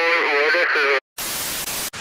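A high-pitched voice with a wavering pitch that cuts off about a second in, followed after a brief silence by a short burst of even static hiss lasting under a second.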